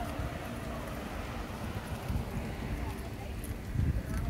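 Uneven low thumps of footsteps and handling as a hand-held camera is carried across grass, over faint background voices outdoors.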